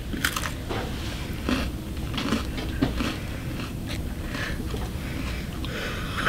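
An Oreo cookie bitten and chewed, a string of irregular crunches from one big mouthful.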